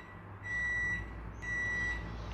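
Electronic beeper sounding a steady high beep twice, each beep about half a second long and about a second apart, over a low hum.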